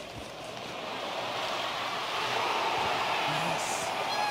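Arena noise heard through a hockey player's wireless body mic: a steady rushing of crowd and rink sound that grows louder. A faint voice comes in near the end.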